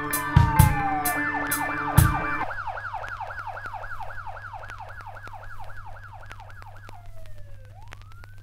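An instrumental beat's drums and music cut out about two and a half seconds in, leaving a siren effect: a fast yelp of about three falling wails a second over a low steady hum, then one long fall and rise near the end.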